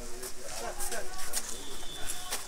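Indistinct voices of several people talking in the background, with a few short clicks.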